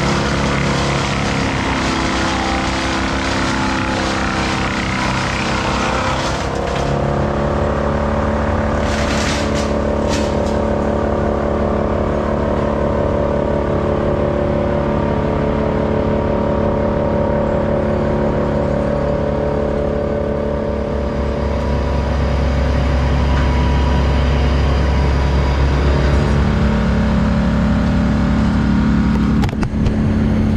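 Engine running steadily, with a slight change in pitch about a quarter of the way in, then growing louder and deeper for the last third.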